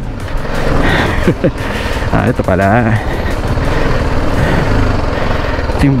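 Single-cylinder engine of a BMW G310GS motorcycle running steadily at low revs as the bike rolls slowly along a rutted dirt track.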